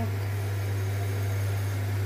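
A steady low hum with a faint even hiss above it, unchanging and with no distinct events.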